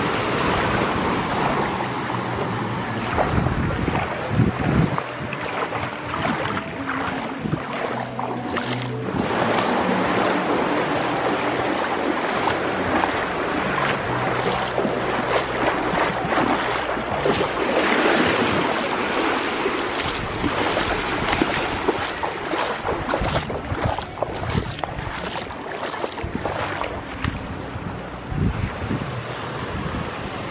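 Shallow surf washing in and out around the feet, with wind buffeting the microphone; the wash swells louder about two-thirds of the way through.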